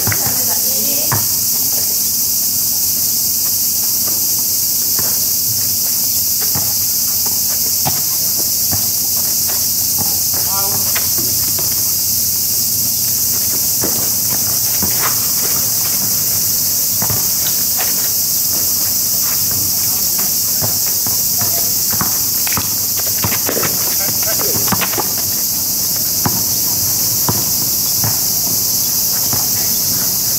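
A steady, high-pitched chorus of insects runs throughout, over scattered thuds of a basketball bouncing on an asphalt court, shoe scuffs and a few brief shouts from players.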